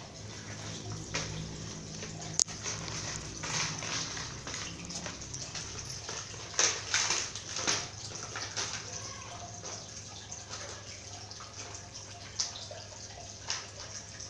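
A puppy playing with a toy on a tiled floor: irregular clicks, knocks and scrapes as the toy is pushed and bumped across the tiles, with a sharp click about two seconds in and a busier cluster of knocks around the middle.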